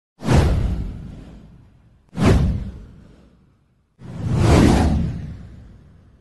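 Three whoosh sound effects in a title-card intro. The first two hit suddenly and fade away over about two seconds each. The third swells up and then fades out.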